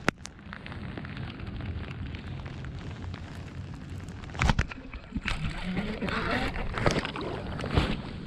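Handling noise from an angler winding a baitcasting reel in gloved hands while wearing a rain jacket: a steady rustle over wind and rain noise on the microphone, with a sharp click just after the start and a couple of louder knocks about halfway through.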